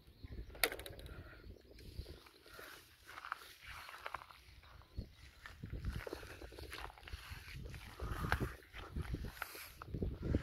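Wind buffeting the microphone in uneven gusts, strongest about halfway through and again near the end, with a few faint higher sounds over it.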